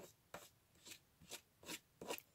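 Ink pad swiped against the edges of a cardstock piece: about five faint, short scrapes, roughly two a second.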